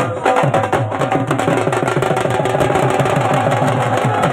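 Punjabi dhol drums beaten with sticks in a fast, driving dance rhythm.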